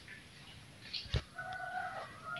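A rooster crowing: a long, held, two-part call, preceded by a sharp click about a second in.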